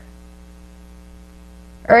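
Steady, quiet electrical mains hum, a low buzz with many evenly spaced overtones. A woman's voice comes back in right at the end.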